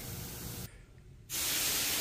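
Steady hiss of moving air inside a paint spray booth, cutting in abruptly about a second and a half in after a brief gap of silence.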